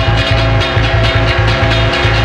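Loud band music: an electric guitar over a pulsing bass line and drums, about four bass notes a second.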